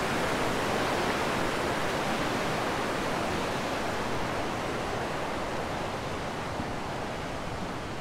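Fast-flowing glacial mountain river rushing over rocks: a steady wash of white-water noise that eases slightly toward the end.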